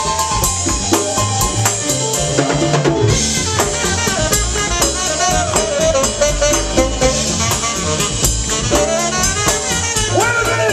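Live Latin jazz band playing a soul groove: drum kit and percussion keep a steady beat, and trombone and saxophone come in with held horn lines about three seconds in.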